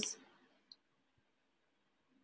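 Near silence: the tail of a spoken word fades out at the start, and a single faint click sounds about two-thirds of a second in.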